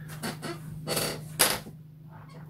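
A few short clicks and soft noises, four of them, the loudest in the second half, over a steady low hum.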